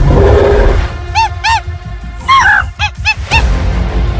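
Background music with dinosaur sound-effect calls laid over it: a short rough growl at the start, then a run of about seven short honking calls, each rising and falling in pitch.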